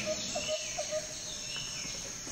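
Insect and bird ambience: a steady high insect trill with short chirps repeating a few times a second and occasional falling bird-like calls.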